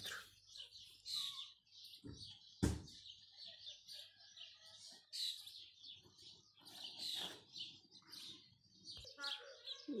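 Birds chirping and twittering at intervals, with one sharp knock a little under three seconds in.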